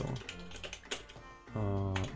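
Typing on a computer keyboard: several separate, sharp keystrokes spread over the two seconds.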